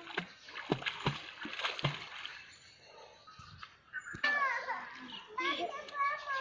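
Splashing from a child swimming in a muddy pond: a quick run of splashes from arm strokes over the first two seconds, then quieter water. In the last two seconds a voice calls out over the water.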